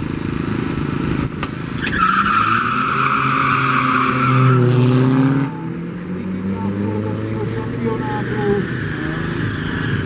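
A tuned turbocharged Fiat Punto 1.4 and a Seat Ibiza TDI launch side by side in a quarter-mile drag race, both engines revving hard at full throttle. The sound turns suddenly loud about two seconds in, with rising engine pitch, and drops away at about five and a half seconds as the cars pull off down the strip.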